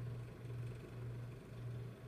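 A steady low background hum, with nothing else standing out.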